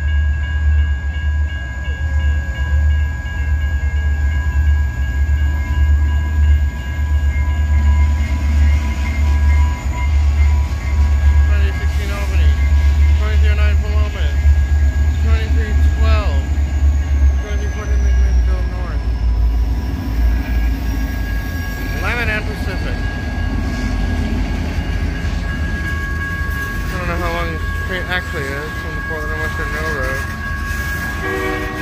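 Diesel freight locomotives passing close by at a grade crossing, their engines rumbling heavily until they go by a little past halfway, with the train's cars rolling on after them. The crossing signal's bell rings steadily throughout.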